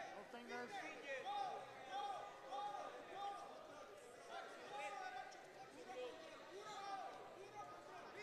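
Faint voices in a large hall: scattered overlapping calls and chatter, with no single loud event.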